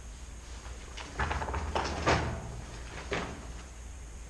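A few short scuffs and knocks from a person moving about and handling things: four in about two seconds, starting about a second in, over a low steady hum.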